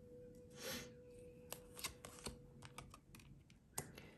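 Tarot cards being drawn and laid down on a table: a soft sliding rustle about a second in, then a handful of light clicks and taps, the sharpest near the end. A faint steady hum sits underneath.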